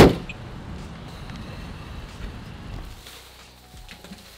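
A car's front trunk lid slammed shut with one sharp thud, followed by a low steady rumble that dies away about three seconds in.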